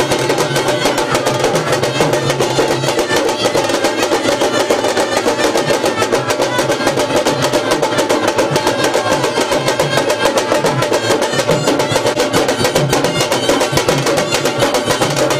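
Band of stick-played shoulder-slung drums beating a fast, dense, unbroken rhythm.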